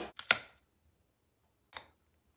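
Hardtack, a hard dry flour-and-water cracker, cracking sharply as it is bitten into near the end, with two short clicks about a quarter second in.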